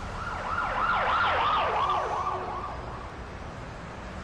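A siren on a fast yelp, its pitch sweeping up and down about three times a second. It swells and then fades away.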